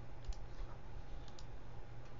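A few faint computer clicks, some in quick pairs, over a low steady hum.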